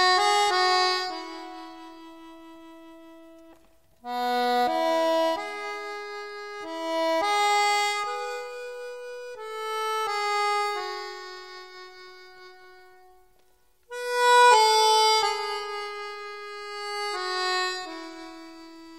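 Slow solo instrumental melody, one line of held notes played in phrases, fading almost away about four seconds in and again about fourteen seconds in before the next phrase starts.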